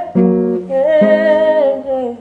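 Music: acoustic guitar chords, a new one struck about a second in, with a man's voice holding a long, wavering sung note over them.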